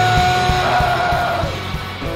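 Rock band playing live: a long held note rings out over drums and electric guitar, fading in the last half second as the song winds down.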